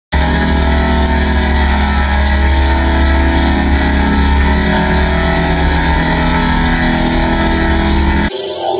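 Heavily effects-processed, distorted logo audio: a loud drone of many steady tones over a strong deep hum, starting suddenly at the very beginning and not changing.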